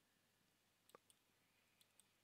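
Near silence, with two very faint clicks, one about halfway and one near the end.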